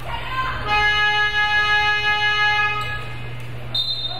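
Gym game buzzer sounding one steady, loud, harsh note for about two seconds during a stoppage in a basketball game, followed near the end by a brief high-pitched tone.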